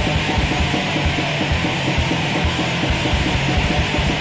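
Raw black metal recording: a wall of heavily distorted guitar over fast drumming with rapid, even bass-drum strikes.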